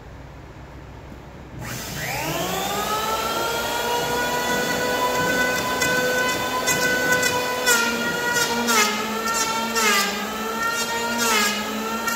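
Electric hand planer switched on about one and a half seconds in, its motor whine rising as it spins up and then holding steady. From about halfway through, it cuts into a red pine slab in about four passes, the whine dipping under each cut with a rasping shave of wood.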